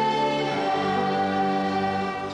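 Children's choir singing long held notes in harmony, moving to a new chord a little over half a second in.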